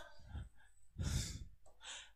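A man's audible exhale, a short breathy puff about a second in, picked up close on a headset microphone.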